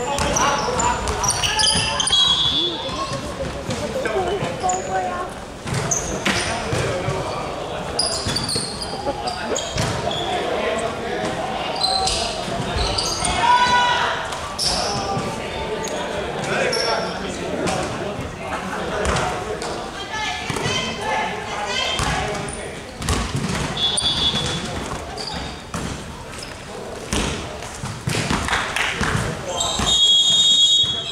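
Basketball bouncing on a wooden court, with players calling out to each other, echoing in a large indoor sports hall.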